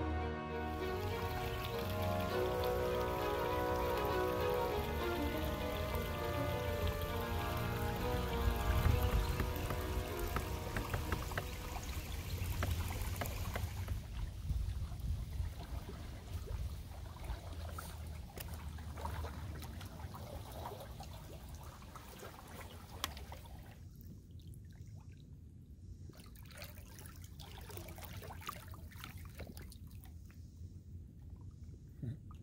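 Instrumental background music fading out about halfway through, followed by river water lapping and trickling with small scattered splashes.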